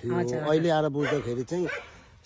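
A man talking in Nepali, his voice rising and falling in emphatic phrases, with a short pause near the end.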